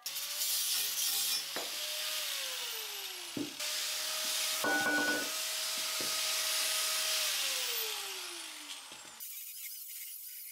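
Angle grinder with a cut-off disc cutting through square steel tube: a loud, hissing grind over the motor's whine, which slides down in pitch twice, then stops suddenly about a second before the end.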